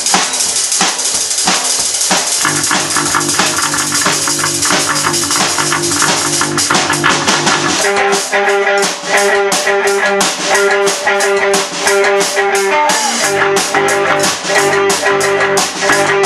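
A rock band of electric guitar, bass guitar and drum kit playing loudly together. Cymbals wash heavily through the first half; about halfway through, the guitar settles into a repeated high note over a fast, even drumbeat.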